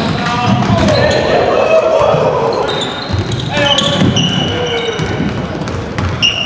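Game sound from a basketball court: a ball bouncing on the hardwood floor, sneakers squeaking in short high chirps, and players' voices calling out.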